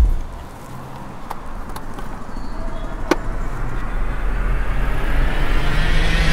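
A low thud at the very start, then a whoosh of noise that swells steadily louder and brighter for about six seconds, with a few faint clicks along the way.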